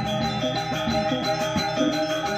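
Balinese gamelan gong ensemble playing: bronze metallophones and gongs struck in a fast, even run of notes over a bed of long ringing tones.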